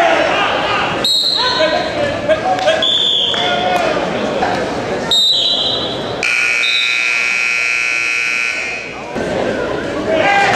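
Gym scoreboard buzzer sounding steadily for about three seconds just past the middle, over spectators and coaches shouting. Two short high referee's whistle blasts come before it, about a second in and about five seconds in.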